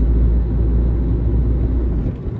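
Road and engine rumble inside a moving car's cabin: a loud, steady low drone that drops off sharply at the very end.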